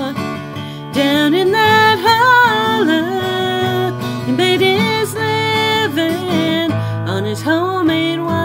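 A woman singing a slow country ballad while strumming an acoustic guitar, with a short breath pause between phrases about a second in.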